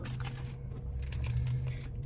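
Faint rustles and clicks of Pokémon trading cards being handled, over a steady low hum inside a car.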